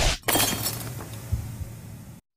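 Glass-shattering sound effect on an animated logo. A loud burst at the start is followed about a quarter second in by a sharp crash, then a long fading tail of breaking debris.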